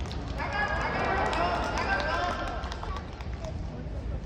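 Voices calling out loudly from about half a second in until nearly three seconds, several overlapping, over a steady low hum.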